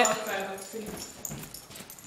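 A young woman's voice trailing off, then faint voices and rustling, with no clear words.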